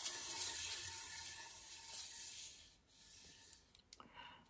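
Wooden lazy susan turning on its bearing, a steady rubbing whir that drops away about three seconds in as the turntable slows to a stop.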